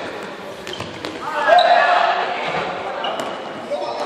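Voices shouting and calling out in a reverberant sports hall, loudest about a second and a half in, with a few sharp thuds of balls bouncing and striking the hard court floor.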